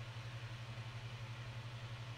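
Steady low hum with a faint hiss: the background room tone of the recording, heard in a gap between words.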